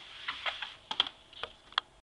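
A whiteboard eraser rubbing across the board, then several sharp knocks and taps of the eraser against the board.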